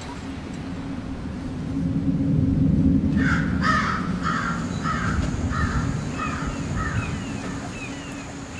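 A bird calling about eight times in quick succession from about three seconds in, with short falling chirps near the end, over a low steady drone.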